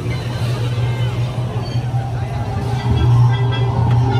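Caterpillar ride vehicle running along its outdoor track with a steady low hum that grows a little louder about three seconds in, over crowd chatter and music.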